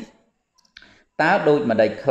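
A monk's voice reading Buddhist scripture aloud in Khmer breaks off, leaving a short pause with a few small clicks. The reading resumes just over a second in.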